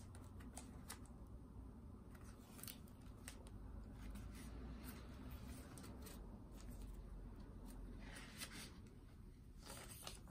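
Faint rustling and crackling of thick, glue-stiffened collage pages of an old journal being turned by hand, in scattered crisp bursts through the whole stretch.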